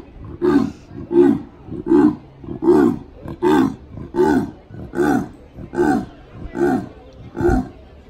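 Leopard giving its sawing call: a long, even series of grunting calls, about one every three-quarters of a second.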